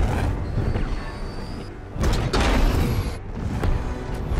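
Monster-film battle soundtrack: a deep rumble with a thin high whine, then a sudden loud blast about two seconds in, with score music underneath.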